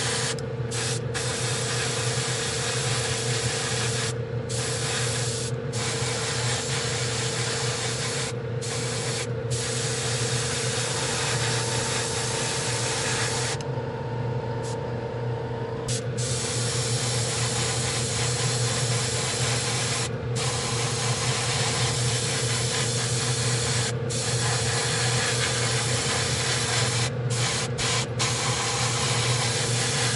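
An airbrush spraying gloss black paint as the undercoat for a metallic finish: a steady hiss that breaks off many times for a moment, and once for a couple of seconds near the middle, as the trigger is released. A steady machine hum runs underneath.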